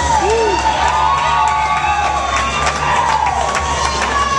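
Audience cheering, with several long whoops rising and falling in pitch, over background music with a steady bass.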